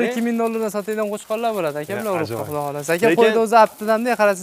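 A flock of fat-tailed sheep bleating, many wavering calls overlapping without a break.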